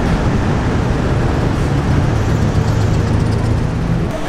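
City bus driving past, its engine giving a steady low hum over the noise of road traffic.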